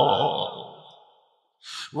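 A man's chanted, wavering held note fades out over the first half second, leaving a short silence. Near the end there is a quick sharp intake of breath into the microphone, just before speech resumes.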